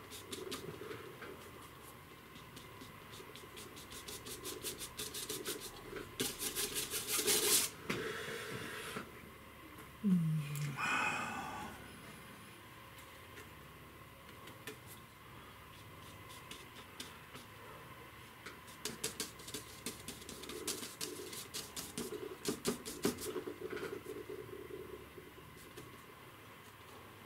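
A flat brush dabbing and scrubbing oil paint onto the painting surface, in quick runs of scratchy taps with quieter stretches of paint being mixed on the palette. There is one short, low, falling sound about ten seconds in.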